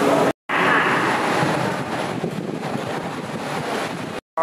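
A steady, dense background din of noise with no clear voice or tune in it. The sound drops out completely for a moment about half a second in, then comes back and eases off a little after the middle.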